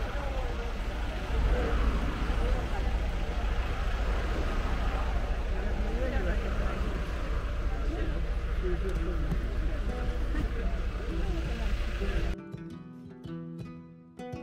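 Steady low rumble of engine and road noise inside a moving tour coach, with faint voices underneath. About twelve seconds in it cuts off and plucked-string background music starts.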